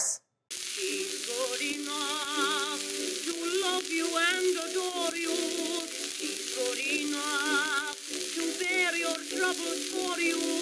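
An acoustic-era 1916 phonograph recording of a woman singing the chorus of a popular song, her voice wavering with a wide vibrato over steady instrumental accompaniment. It comes in about half a second in, under the heavy hiss and crackle of old record surface noise.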